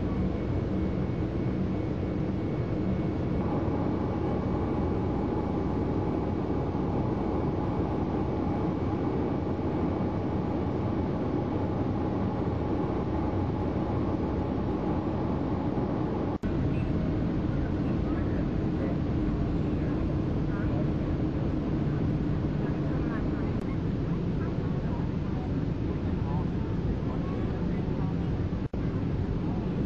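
Boeing 757 engine and airflow noise heard inside the cabin, a steady rush with a faint whine that stops about sixteen seconds in.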